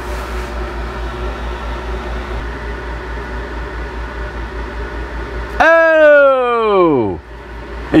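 RV roof air conditioner running with a steady hum. About five and a half seconds in, a loud tone slides down in pitch for about a second and a half, and the low hum stops.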